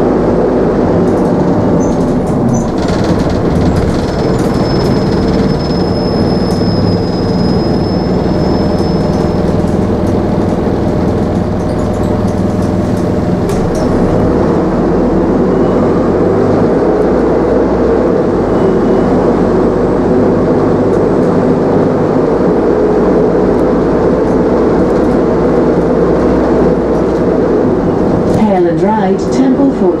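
Optare Solo single-deck diesel bus running on the road, heard from inside the saloon: a steady engine and drivetrain drone over tyre and road noise. There are occasional knocks and rattles from the body, and a thin high whine for a few seconds early on.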